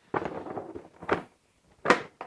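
Hard plastic Milwaukee Packout crate being set down onto a stacked Packout tower: a clattering rattle, a sharp clack about a second in, and a louder clunk near the end as it seats on top.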